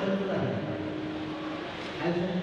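Kirtan performance: a man's voice over a PA microphone, with a steady harmonium note held beneath it from about half a second in.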